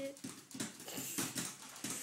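A toddler's short grunting vocal sounds mixed with repeated knocks and rattles from a small wooden chair that he is shaking back and forth.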